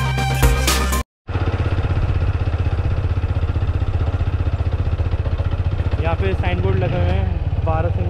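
Background music cuts off about a second in. After it comes the steady running of a TVS Apache 160's single-cylinder engine, heard from on board the moving motorcycle. A voice comes in near the end.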